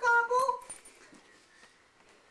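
A person's high voice chanting a run of short repeated syllables, a mock turkey "gobble, gobble", which stops under a second in. After it there are only faint small ticks.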